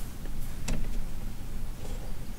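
A few soft clicks from fingertip taps on a synthesizer's touchscreen, the clearest about a third of the way in, over a steady low rumble.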